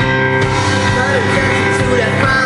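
A live rock band playing, with electric guitar, keyboard and drums.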